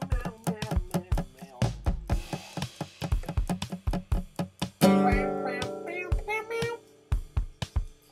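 An acoustic band's song playing: guitar over a drum beat, with a loud held chord about five seconds in.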